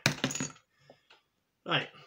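Metal crown cap from a beer bottle clattering onto a hard surface: a short burst of metallic clinks with a brief ring.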